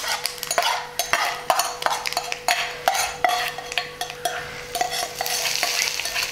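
Sizzling and irregular crackling pops from a hot-oil tempering of dried red chillies and curry leaves, with a wooden spatula stirring in a nonstick pan. The sizzle thickens near the end as the tempering goes into the kichadi.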